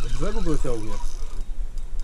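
A man's voice: one short exclamation with a rising then falling pitch in the first second, over a steady low rumble.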